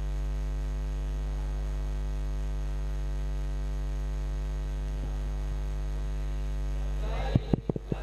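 Steady electrical mains hum from a public-address microphone feed: a low buzz with a ladder of overtones. Near the end come several loud knocks of a handheld microphone being handled.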